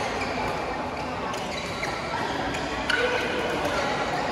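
Badminton play: rackets striking the shuttlecock with sharp clicks and court shoes squeaking briefly, over a steady murmur of many voices.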